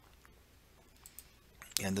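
A few faint computer mouse clicks in quiet room tone, as a field is chosen from a drop-down list.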